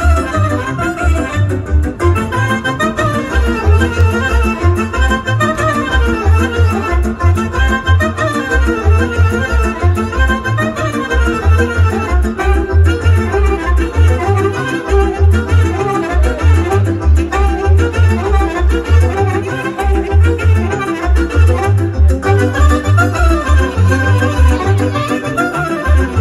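Romanian folk dance music for a folk ensemble's performance, played through outdoor stage loudspeakers, with a quick melody over a steady, regular bass beat.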